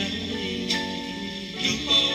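A vocal group ballad played from a 45 rpm single: voices hold chords over a guitar, with a light beat struck twice.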